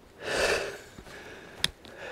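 A man's short, heavy breath, hissy and breathless from climbing a steep hill path. A single sharp click follows about a second later.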